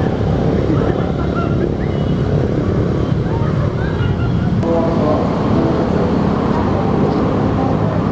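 Steady background noise of road traffic with voices mixed in.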